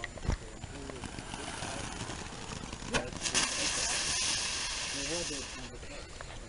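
Sharp pops at the start, then about three seconds in a small ground firework catches with a crack and sprays out a steady high hiss of sparks for about two and a half seconds before dying away.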